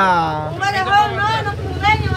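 Voices talking over the low rumble of a motor vehicle's engine, which comes in about half a second in and keeps going.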